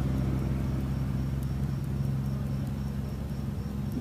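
Pause between spoken passages: a steady low hum and background noise of the recording, with a faint steady high tone above it.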